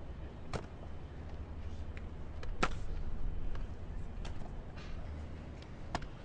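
A football smacking into players' hands as it is caught, a few sharp slaps about every second and a half, the loudest a little before the middle, over a low steady rumble.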